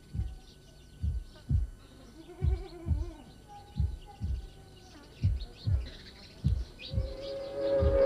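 Low drum beats, each dropping quickly in pitch, mostly struck in pairs about every second and a half, with faint high chirps in the middle. A steady held tone swells in near the end.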